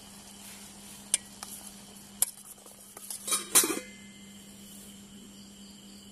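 Stainless steel cookware clinking: a couple of sharp clinks, then a louder short clatter of a steel pot lid and spoon about halfway through, over a faint steady hum.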